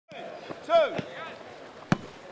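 Footballs being struck in a passing drill: three sharp thuds of boot on ball, the last and loudest near the end.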